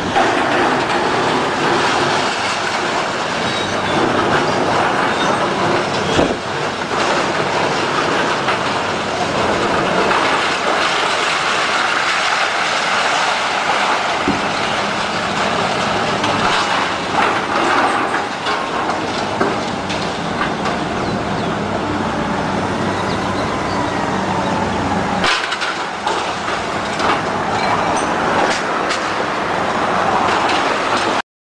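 Building demolition by a hydraulic excavator: a steady din of machinery and breaking, falling debris, with occasional sharp knocks and crashes, one about six seconds in and another about twenty-five seconds in.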